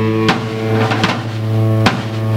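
Live rock band: distorted electric guitar and bass hold a loud droning chord, with a few sharp drum hits, the strongest near the end.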